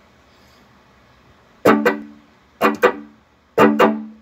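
Guitar strummed through a Line 6 HX Effects pedal: faint hiss at first, then a chord about a second and a half in, two more in quick succession, and another near the end, each ringing out. The pedal is passing signal again after its broken input and output solder joints were repaired.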